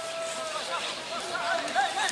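People shouting outdoors: one voice holds a long drawn-out call for most of two seconds while other shorter shouts and calls overlap it, loudest near the end.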